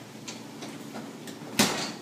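Kitchen oven door shut with a single sharp clunk about one and a half seconds in, after a few faint clicks.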